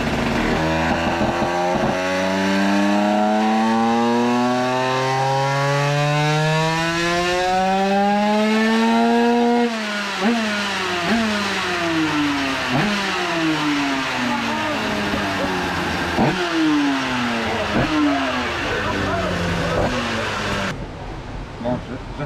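Minarelli AM6 two-stroke single, kitted to 100cc with a 2Fast cylinder, making a first full-throttle power run on a motorcycle dynamometer. The pitch climbs steadily for about nine seconds, then the throttle shuts and the revs drop. It is blipped several times, each blip falling away, as it winds down.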